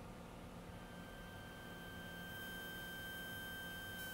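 Faint steady drone of a Cessna 182T's six-cylinder Lycoming engine and propeller in cruise, heard through the headset intercom feed. A thin, steady high electronic tone comes in just under a second in and holds.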